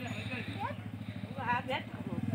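A small vehicle engine running with a rapid, steady low putter as vehicles struggle through deep mud.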